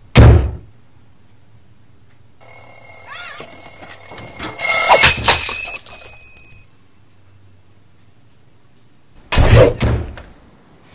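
Animated-film sound effects: a loud thump at the start, then a steady, bell-like ringing tone for about four seconds with a loud clatter in the middle, and a second loud thump near the end.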